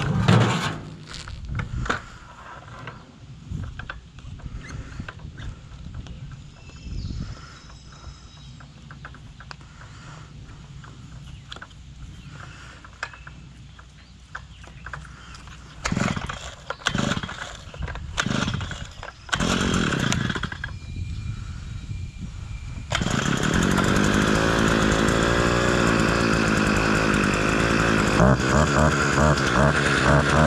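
A small two-stroke engine starts running about three quarters of the way in and keeps going loud and steady. It follows a few short bursts of noise and, before them, only scattered knocks and handling sounds.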